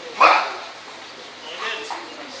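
Two short, sharp shouts: a loud one about a quarter second in and a fainter one near the end.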